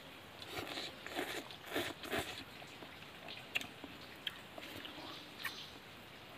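People slurping and chewing instant noodles eaten with chopsticks: a run of close, irregular slurps in the first couple of seconds, then quieter chewing with a few sharp clicks.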